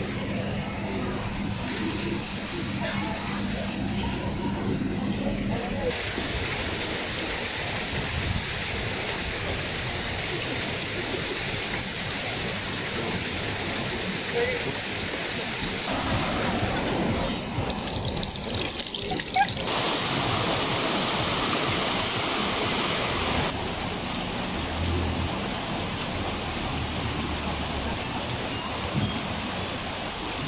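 Water running steadily from a tap into a granite fountain and flowing in a small stream, with people talking in the background.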